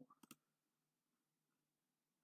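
Near silence, with two faint computer mouse clicks just after the start.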